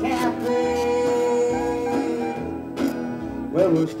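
Live country band playing a honky-tonk song, guitars carrying the tune, with a long held note from about half a second to two seconds in.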